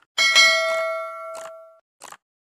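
A notification-bell 'ding' sound effect, struck once and ringing out for about a second and a half as it dies away. A faint click comes just before the ding, and another short click comes about a second and a half in.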